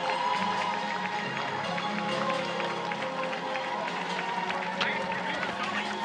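A large pack of runners' shoes slapping on asphalt as they stream past, with music and crowd voices in the background.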